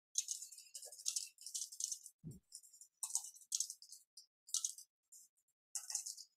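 Computer keyboard typing: quick, irregular, faint key clicks, with one brief low thump a little over two seconds in.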